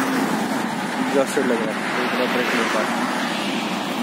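Steady road traffic noise from passing cars and motorbikes, a continuous rushing hum with no single loud event.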